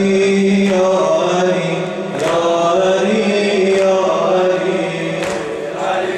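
A male reciter chanting a Persian mourning lament (noheh) into a microphone in long, held melodic lines. A regular beat of sharp strikes falls about every second and a half.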